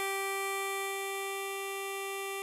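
Tremolo harmonica holding one long blow note, G4 on hole 7, steady and unbroken.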